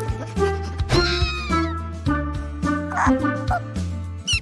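Bouncy cartoon background music over a steady bass line. About a second in, a high squeaky cartoon sound slides down in pitch, and a short noisy burst follows near the end.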